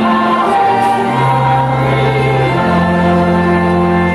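Music: a choir singing slow, held notes over long sustained low bass notes.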